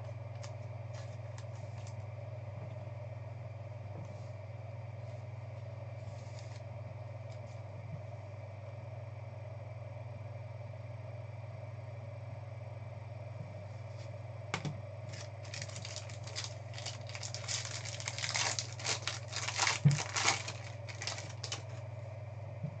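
Trading cards and a clear plastic card holder being handled on a table: a few faint clicks at first, then a busy run of sharp clicks and crinkles over the last several seconds. A steady low electrical hum runs underneath throughout.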